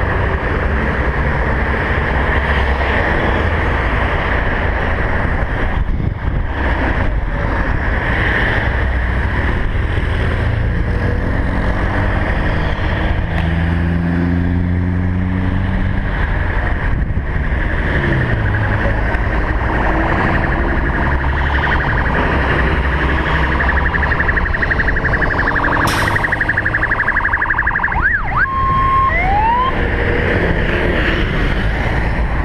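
Steady road-traffic noise from engines and tyres on a busy multi-lane avenue. Near the end come a few short rising siren whoops.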